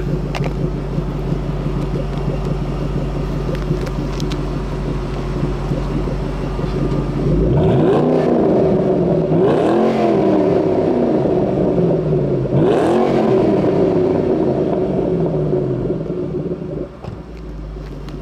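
2014 Shelby GT500's supercharged 5.8-litre V8 exhaust idling, then revved twice, each rev climbing quickly and falling back to idle. Very deep, very aggressive and very loud.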